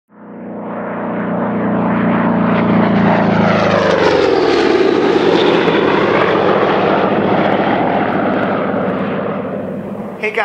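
A propeller aircraft flying past. Its sound fades in, its engine tone drops in pitch as it passes about four to five seconds in, and it carries on as a steady rushing noise.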